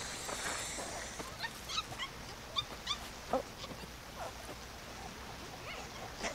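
Young ape's short squeaky whimpering calls from the film soundtrack, several in quick succession, each sliding in pitch.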